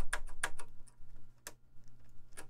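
Several short, sharp plastic clicks, most of them in the first second and a half, as keycaps are pushed down onto the HP-86's 3D-printed key stems.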